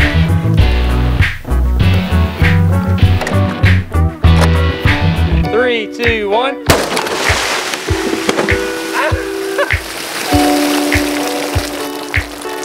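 Background music with a steady beat. About two-thirds of the way in, a sudden burst gives way to a steady hiss: an AK-47 fired underwater shatters its tempered-glass aquarium and the water rushes out.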